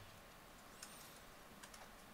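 Near silence, broken by faint clicks and a brief high squeak of a marker writing on a whiteboard, about a second in and again near the end.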